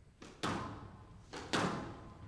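Two sharp smacks of a squash ball being struck, about a second apart, each with a short echo in the hall.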